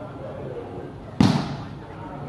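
A volleyball struck once by hand about a second in, a single sharp smack, with low crowd chatter around it.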